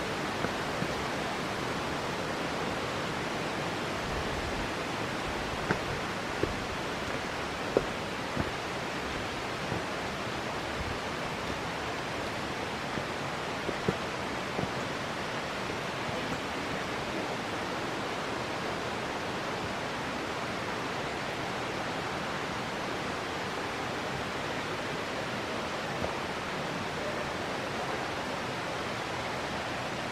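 A steady outdoor rushing noise in a bamboo forest, even and unchanging throughout, with a few scattered faint knocks in the first half.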